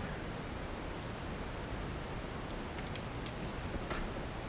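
A glazed fried apple pie being broken open by hand, its sugar glaze and crust giving a few faint crackles in the second half and a sharper one near the end, over a steady hiss.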